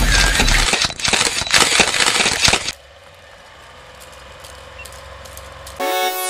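Crackling, clicking static and glitch sound effects for a logo intro, which cut off suddenly about two and a half seconds in. A faint hiss with a low hum and a thin steady tone follows, and synthesizer music starts just before the end.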